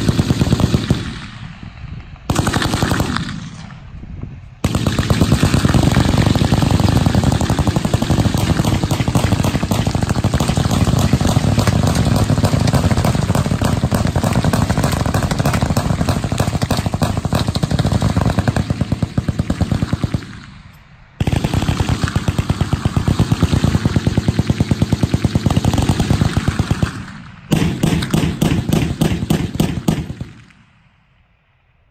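Several machine guns firing fully automatic, loud and rapid. There are two short bursts at first, then a long unbroken stretch of about fifteen seconds. After a brief pause come two more long bursts.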